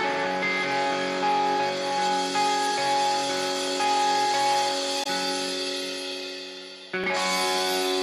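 Music: the guitar intro of a punk rock song, with picked notes ringing over one another. The guitar fades from about five seconds in, and a fresh chord rings out about seven seconds in.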